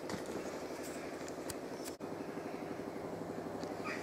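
An engine running steadily with a low hum, broken by a brief dropout about halfway through.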